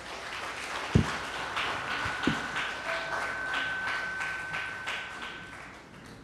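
Congregation applauding, many hands clapping, rising early and fading away toward the end. A low thump comes about a second in and another just after two seconds, and a steady high tone is held through the middle.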